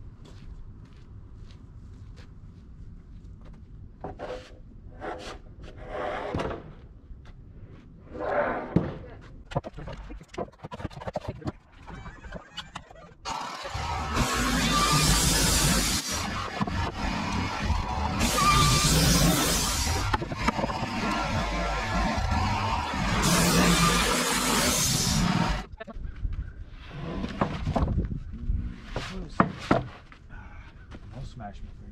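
Knocks and thumps of sawn lumber boards being handled and stacked. In the middle, background music comes in suddenly and plays for about twelve seconds before cutting off.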